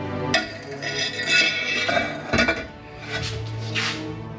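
A steel pipe used as a cheater bar is slid over the handle of a torque wrench clamped in a vice: a few sharp metal clinks and scrapes, over background music.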